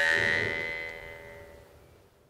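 Innokenty Gotovtsev 'Sterkhi' Yakut khomus, an iron jaw harp, on its last plucked note: a held high overtone over the buzzing drone, dying away steadily to almost nothing.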